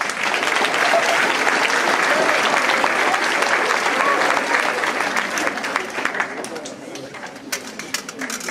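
An audience applauding. The clapping starts suddenly at full strength, with voices mixed in, and dies down over the last couple of seconds.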